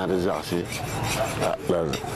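Hand file rasping on a bronze casting, a continuous scraping noise, with short bits of a man's voice at the start and near the end.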